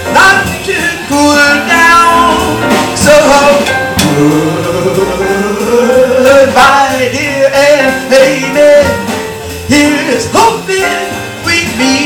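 Female jazz vocalist singing live with a small band accompanying her. In the middle she holds one long note that slides upward and wavers.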